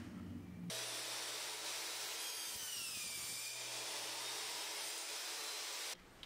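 Porter-Cable miter saw running and cutting the end off a cellular shade, headrail and bottom rail together. It starts abruptly about a second in and runs steadily, with a whine that drops in pitch partway through.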